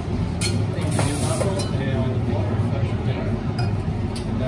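Busy café ambience behind the espresso bar: steady customer chatter over a low machine hum, with clinks of cups and metal milk jugs. A short steam hiss comes about a second in.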